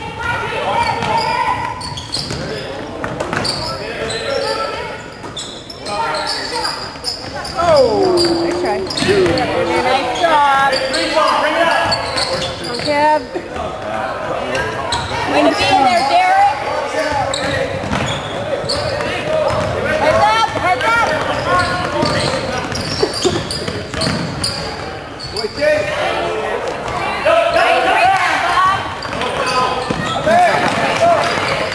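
Sounds of a basketball game in a gymnasium: a ball bouncing on the hardwood court and sneakers squeaking, with players and spectators calling out, all echoing in the large hall.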